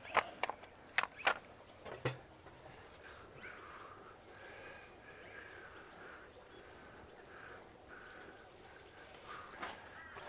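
A few sharp clicks in the first two seconds as a tomato plant's trellis spindle, hooks and twine are handled. After that, faint bird calls run on over a quiet background until near the end.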